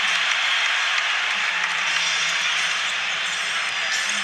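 Steady cheering of a packed basketball arena crowd, a continuous wash of many voices and noise.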